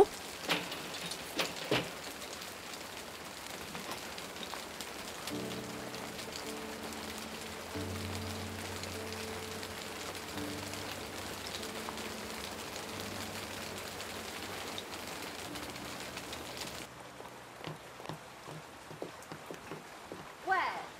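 Steady rain falling on the ground, with a few drips or taps in the first couple of seconds. Soft background music with held notes comes in about five seconds in and fades out after about ten seconds, and the rain becomes quieter near the end.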